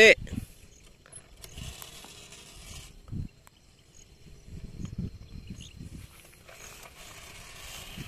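Hand-pumped knapsack sprayer at work: faint creaking and clicking of its pump mechanism and a soft hiss of spray from the nozzle.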